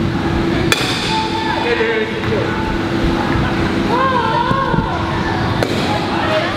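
Baseball bat striking pitched balls in a batting cage: two sharp knocks, about a second in and near the end, with voices chattering in the background.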